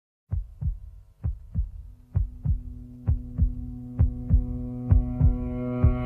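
Instrumental song intro opening with a heartbeat effect: double low thumps (lub-dub) about once a second. A sustained chord comes in underneath and grows fuller.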